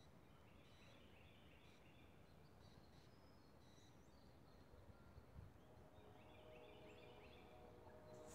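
Near silence with faint distant bird calls: two runs of quick high notes, one about a second in and another about six seconds in.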